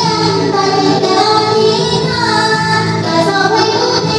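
A woman singing a Vietnamese song into a handheld karaoke microphone over a backing track, her voice amplified with the music.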